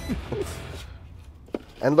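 Quiet handling of small items in a car's center console, with a single light tap about one and a half seconds in; a brief voice fragment at the start and a man starting to speak near the end.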